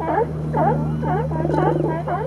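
A group of California sea lions barking, many overlapping barks following one another several times a second.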